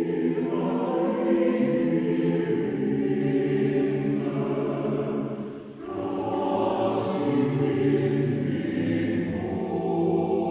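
Choir singing slow, sustained chords, with a short break between phrases about six seconds in.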